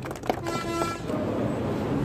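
Clapping tails off, then a horn sounds one short steady toot of about half a second.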